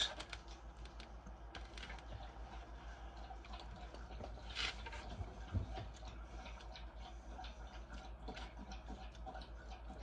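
Faint small clicks and ticks of a man chewing a bite of egg white, over a low steady hum, with a brief soft rustle about halfway through.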